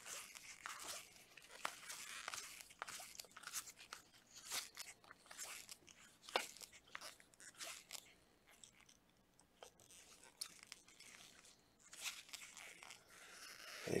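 Baseball trading cards being flipped one after another through a stack by a gloved hand: faint, irregular crisp clicks and rustles of card stock sliding over card stock, thinning out for a few seconds past the middle.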